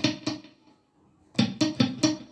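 Stratocaster-style electric guitar strummed with the fretting fingers resting lightly on the strings, so each stroke is a short, choked chuck rather than a ringing chord. There are three quick muted strums, a pause of about a second, then three more.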